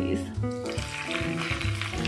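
Hot cooking oil sizzling as it is poured over chopped dried chilies, starting shortly after the beginning, under background music.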